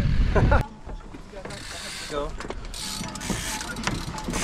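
Steady low rumble on the action camera's microphone while riding up a drag lift, cutting off abruptly about half a second in. After that come quieter scattered light mechanical clicks and rattles from mountain bikes being handled at a trail start, with a short voice near the middle.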